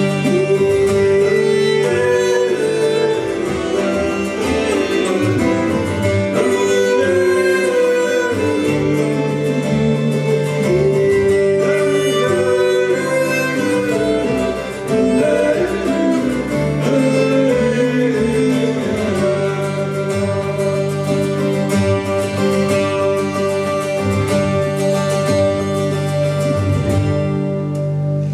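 Folk band playing an instrumental passage on acoustic strings: bowed fiddle lines and plucked guitar over a steady double bass.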